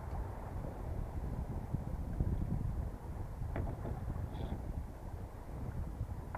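Wind buffeting an action camera's microphone on a small sailboat under way, a steady low rumble, with a faint click or knock about three and a half seconds in.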